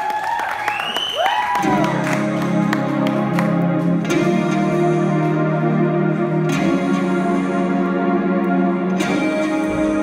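Live band starting a song's intro. A few high whoops come first, then about two seconds in sustained, echoing chords begin and move to a new chord every two to three seconds.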